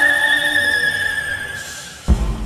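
Eerie intro sound effect: a sustained high ringing tone, with fainter higher tones above it, slowly fading away.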